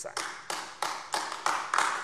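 Hand clapping in the chamber: a steady run of sharp claps, about four to five a second, in approval of a speaker's point.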